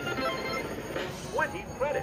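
A man's brief exclamation over the steady background of a casino floor, with faint bell-like electronic tones from a slot machine during its Top Dollar bonus offer.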